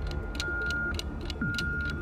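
Game-show countdown clock cue: rapid even ticking, about six ticks a second, over a low drone and a high tone that sounds for about half a second roughly once a second, timing a five-second answer period.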